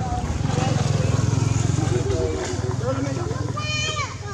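Steady low rumble of a running engine, with voices and short squeaky calls over it, and a high squealing call near the end.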